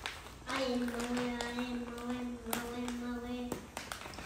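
A young child's voice holding one long, steady sung note for about three seconds, with a few light taps during it.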